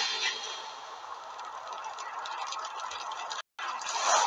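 Steady, even hiss of background noise as a loud scuffle dies away in the first half second, with a brief drop to dead silence near the end.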